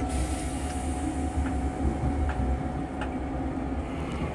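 Running noise of a Metro-North M3 electric railcar heard inside its restroom: a steady low rumble and hum, with faint clicks about once a second from the wheels on the track. A hiss fades away over the first second or two as the toilet's flush finishes.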